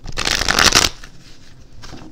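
Deck of tarot cards being shuffled by hand: a fast, loud run of flicking cards lasting under a second, then quieter handling of the deck.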